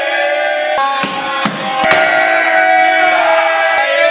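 Several men's voices chanting together in long, held tones, with a few sharp clacks about one to two seconds in.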